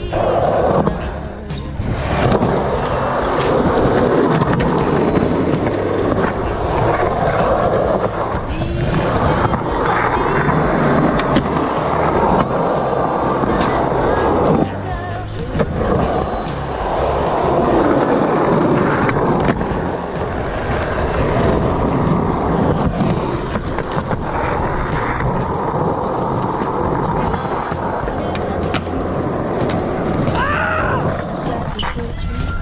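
Skateboard wheels rolling on smooth concrete, a continuous rough rumble that swells and fades as the board picks up speed and carves, with background music underneath.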